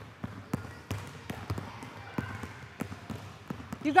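A basketball being dribbled on a hardwood gym floor: a string of sharp bounces at an uneven pace.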